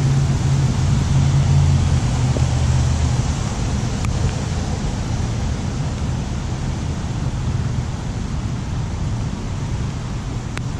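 Steady rushing outdoor background noise, with a low hum that fades out about three seconds in.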